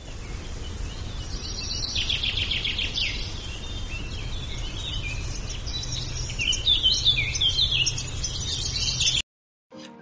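Several birds chirping and trilling over a steady low rumble. The birdsong starts about a second in and everything cuts off sharply near the end.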